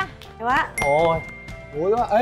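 A single electronic ding, one clear high tone held for about a second, sounding through excited shouting voices.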